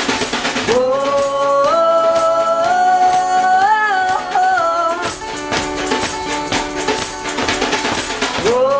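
Live acoustic band music: a strummed acoustic guitar and shaken hand percussion keep time while voices sing a long held note from about a second in until about five seconds.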